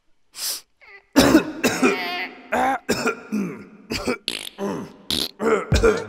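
Vocal mouth and throat sound effects: a short breathy burst, then from about a second in a dense run of bending, throaty vocal noises broken by sharp clicks.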